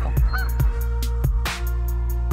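Background electronic music with a steady beat, about two beats a second, over sustained synth tones.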